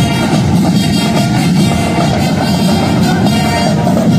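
Marching band playing loud, continuous music with a steady drum beat.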